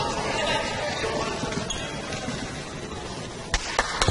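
Basketball bouncing on a hardwood gym floor: two sharp bounces near the end, over the steady background murmur of the gym crowd.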